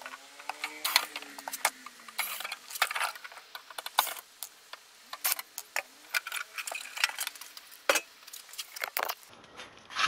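Screws being undone and the sheet-metal cover of a cassette deck being handled, making a scattered run of light metallic clicks and clinks. A cordless screwdriver whirs faintly, rising then falling in pitch, in the first two seconds.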